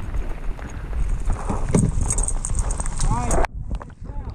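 Steady rumble of wind buffeting an action camera's microphone in heavy rain, with many sharp ticks of raindrops hitting the camera housing. The level drops suddenly a little after three seconds in.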